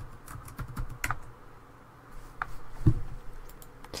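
Irregular clicks of computer keys and a mouse as times are entered in a web form, with one heavier thump just before three seconds in.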